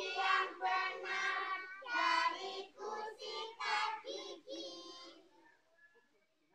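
Young children singing together, loud sung phrases that end about five seconds in.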